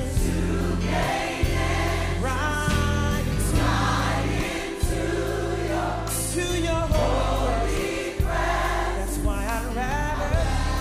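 Choir singing a gospel worship song over instrumental backing with sustained bass notes.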